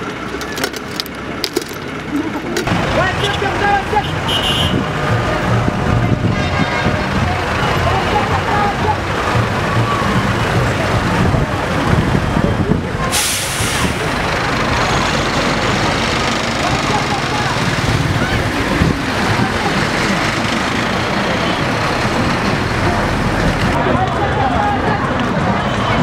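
Street traffic from a convoy of police pickup trucks and other vehicles driving along a town road. Engines run steadily under a mix of voices, and there is a brief loud hiss about halfway through.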